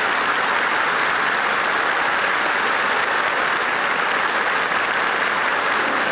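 Studio audience applauding steadily at the close of a song.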